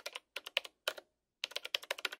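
Computer keyboard typing sound effect: quick runs of key clicks in a few bursts, with a short pause around the middle.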